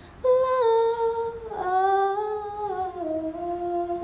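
A woman's voice singing wordlessly and unaccompanied: two long held notes, each stepping down in pitch, with a brief breath between them about a second and a half in.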